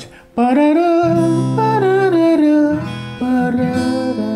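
Steel-string acoustic guitar strummed softly, with light strokes whose chords ring on, while a voice sings a slow melody over it.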